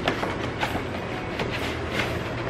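A white cardboard box being opened and its packaging handled: rustling with a few light knocks.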